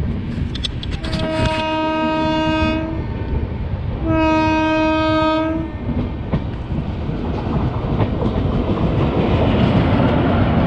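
A train horn sounds two long blasts of the same steady pitch, a second apart, over the rumble and clickety-clack of a train running on the rails. The rail noise grows louder near the end as an oncoming express draws close.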